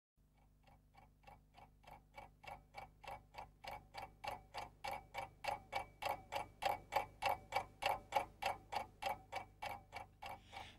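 A clock-like ticking, about three ticks a second, fading in and growing steadily louder, over a faint low hum.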